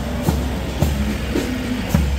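March music with a steady bass drum beat about twice a second and held pitched notes, over the engine of a heavy fire-service tanker truck running close by as it drives slowly past.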